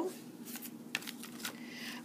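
A handmade paper card being handled and set aside: a few soft taps and paper rustles.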